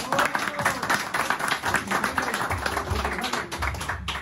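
A small group of people applauding, many hand claps in a dense, uneven patter, with a few voices in among them.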